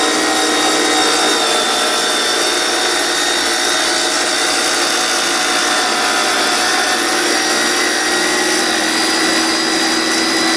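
Mastercraft 7-inch wet tile saw running under load, its blade grinding through a wet ceramic tile. The motor keeps a steady multi-pitched whine over a gritty hiss.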